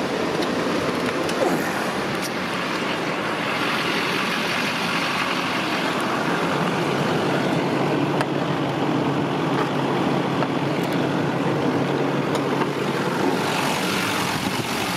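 Duramax 6.6-litre V8 turbo diesel in a 2004 Chevrolet Silverado 2500HD idling steadily, with a steady low hum coming in about halfway through.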